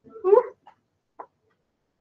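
A short voice-like cry that rises in pitch, then two faint pops about half a second apart, from someone trying to pop their fingers.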